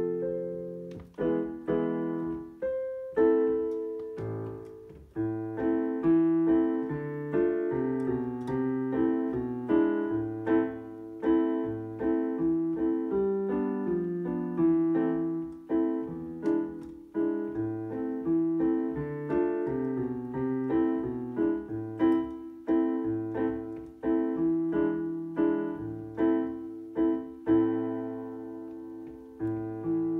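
Solo piano played with both hands: a steady stream of notes, with low bass notes under a melody in the middle register.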